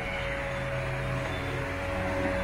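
Small electric propeller motor of a light-up flying ball toy whirring steadily, a constant tone over an even hiss.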